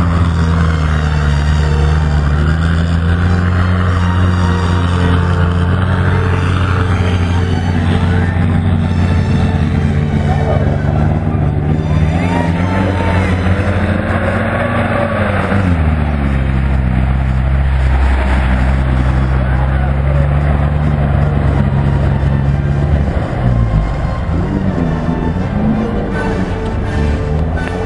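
Off-road 4x4 vehicle's engine running and revving under load as it drives through a muddy, water-filled track, its pitch rising and then falling about halfway through.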